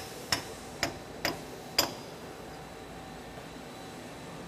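Hammer taps on a steel pin driver, pressing a 10 mm steel dowel pin into a lathe's tool turret. There are four sharp metallic taps with a short ring, about two a second, and they stop about halfway through.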